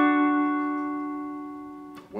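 An electric guitar's E dominant chord, played with a slide, ringing out after being struck just before, several notes held steady and fading away evenly.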